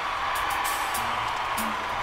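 Start of a live band performance: an even wash of audience noise with cymbal-like hits, and short low bass notes coming in about a second in.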